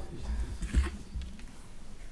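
Room noise in a crowded meeting room: indistinct low voices with a few dull low thumps, the loudest a little under a second in.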